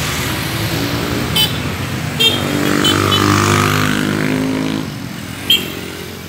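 Road traffic at a busy junction: motorcycle and car engines passing close, the engine sound building to its loudest a little past halfway and fading near the end, with a few short high horn toots.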